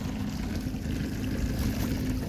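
Small boat's motor running with a steady low hum.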